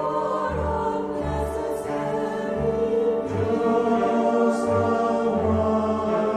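Mixed choir of male and female voices singing in harmony, with a low note pulsing underneath.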